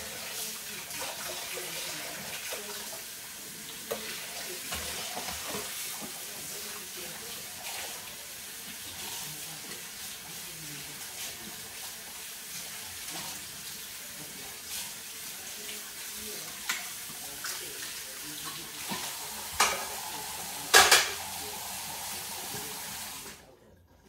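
Kitchen faucet running steadily into a sink while dishes are washed by hand, with occasional clinks and knocks; the loudest is a sharp clatter about 21 seconds in. The water shuts off about a second before the end.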